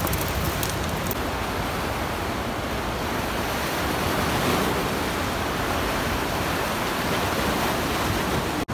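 Steady rushing of a fast mountain river, an even wash of water noise, with a few faint crackles of dry brushwood being handled in the first second.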